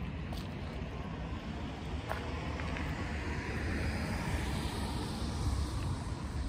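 Steady low outdoor rumble, with a passing vehicle whose noise swells about halfway through and eases off near the end.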